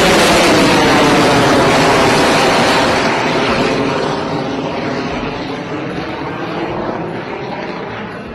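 Aircraft flying past, loudest at first and then slowly fading, its pitch sweeping down and back up as it passes.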